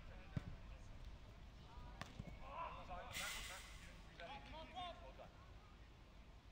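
Football kicked on an artificial turf pitch, heard faintly from across the pitch: a sharp knock about a third of a second in, then two or three lighter knocks around two seconds. Players shout to each other, and there is a brief rushing hiss a little after three seconds.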